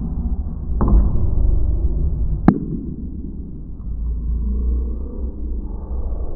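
Muffled, low rumble of a busy bar room, with a faint click just under a second in and a single sharp click about two and a half seconds in.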